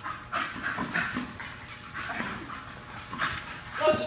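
Miniature bull terrier vocalizing in several short, separate bursts.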